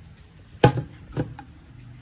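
Aluminium pressure-cooker lid set down on a bench: one sharp knock a little after half a second in, then a softer second knock about half a second later.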